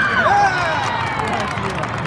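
High-pitched girls' voices shouting and cheering as a volleyball point ends, strongest in the first half-second, over the steady hubbub of a large, echoing sports hall with scattered sharp knocks.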